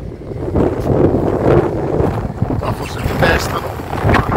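Wind buffeting the microphone in a steady low rumble, with people talking in the background.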